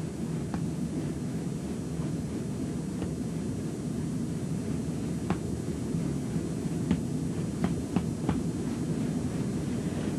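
Steady low room rumble, with a few faint short ticks scattered through it.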